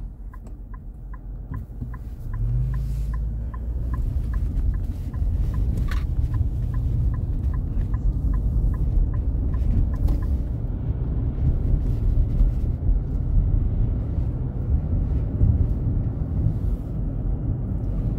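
Car turn-signal indicator ticking steadily inside the cabin, roughly two to three ticks a second, stopping about ten seconds in. Under it, the low rumble of the car's engine and tyres on the snowy road rises as the car pulls away and then holds steady.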